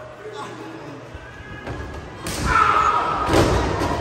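Two heavy impacts in a wrestling ring about a second apart in the second half, with shouting over them.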